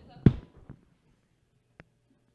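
Handling noise from a handheld microphone being passed over and set up: one loud, deep thump about a quarter of a second in, then a single short click near the end.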